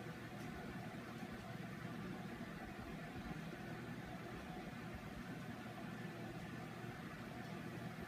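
Steady faint hiss of room tone, with no distinct sounds standing out.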